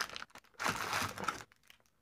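Plastic wrapper of a brick of modeling clay crinkling as hands handle the brick and pull a piece of clay off it; the rustling stops about a second and a half in.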